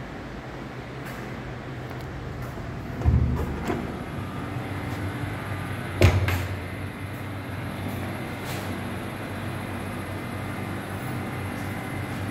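Two sharp thuds, about three seconds apart, the second the louder, over a steady low hum.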